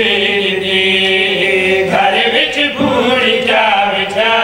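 A zakir's Muharram elegy chanted by a group of men's voices in unison: one long note held for about two seconds, then the melody moves on in sliding notes.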